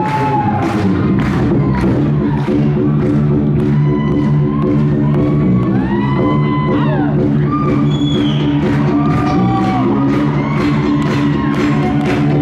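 Live funk band playing: electric guitar over a steady bass line and drum beat with about three strokes a second, while the audience whoops and cheers.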